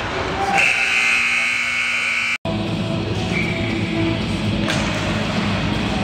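Arena horn sounding steadily for about two seconds, cut off abruptly, followed by music over the rink's PA with crowd chatter.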